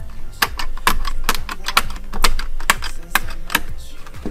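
Quick, irregular clicking and snapping as a disc-bound planner's cover and pages are worked on and off its binding discs, about three to five clicks a second.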